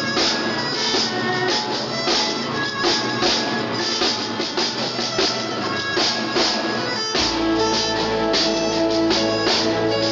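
Live band music: a drum kit keeps a steady beat with guitar. About seven seconds in, a deep sustained bass and held chords come in and the sound fills out.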